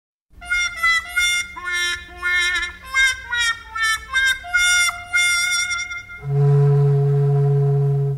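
Instrumental introduction to a song on a wind instrument: a short melody of separate notes, then a long held chord over a strong low note for the last two seconds.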